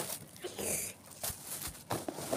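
Packing tape ripped off a cardboard parcel, with plastic wrapping crinkling: a short hissing rip a little under a second in, then a couple of light knocks.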